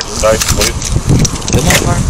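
A brief muffled voice over a steady low rumble, with scattered clicks and rustling of handling noise against a body-worn camera's microphone.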